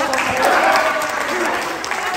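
Audience applauding, with a few voices calling out over the clapping.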